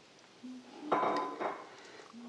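A metal spoon scraping and clinking against a glass salad bowl, with a short ringing note about a second in.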